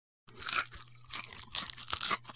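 Brief silence, then a quick run of short, crisp crunching and crackling noises over a faint low steady hum.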